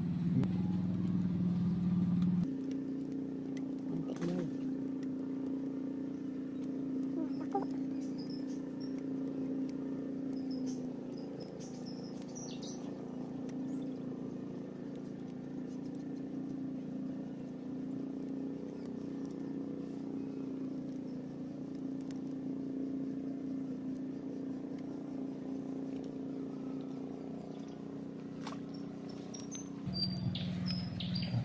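Steady low hum of a distant motor, with a few short bird chirps in the middle and near the end.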